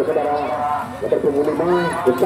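Men's voices talking and calling out in the background, with a short steady low note shortly before the end.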